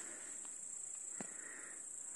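Grasshoppers chirping: a steady, high-pitched chirring, with one faint click a little past a second in.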